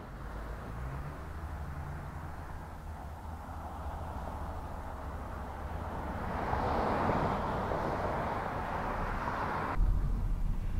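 Outdoor traffic noise: a steady low rumble, with a passing vehicle's rush swelling and fading between about six and nine seconds in.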